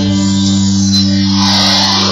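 Live electronic folk music: a single low note held steadily with its overtones, with no drum beats. A hiss swells up in the high range in the second half.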